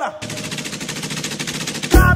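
Machine-gun fire sound effect in a break where the music drops out: one rapid, even rattle of shots lasting nearly two seconds.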